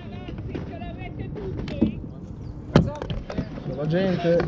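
Knocks and light clatter on a plastic fishing kayak as the paddle and gear are handled, the loudest a sharp knock about three-quarters of the way through, over faint voices.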